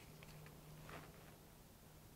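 Near silence: room tone with a faint steady low hum and a few faint small clicks early on.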